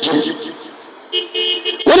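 A vehicle horn giving one short toot of under a second, about a second in, with two or more steady tones sounding together. Amplified speech trails off before it and starts again just after.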